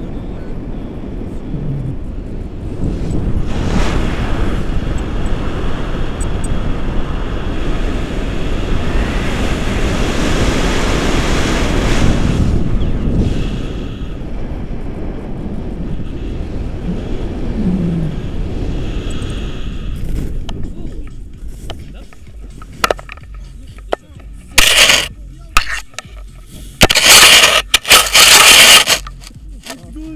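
Wind rushing over a tandem paraglider's action-camera microphone in flight, a steady noise that eases after about twenty seconds. Near the end come several loud scraping bursts of fabric rubbing against the camera microphone as it is handled.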